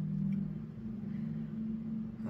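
Soft background music: a steady, sustained low drone.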